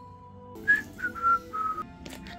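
Hand-sanitizer pump bottle squirting gel: four short whistle-like squirts in quick succession, each a hissy tone dropping slightly in pitch, over soft background music.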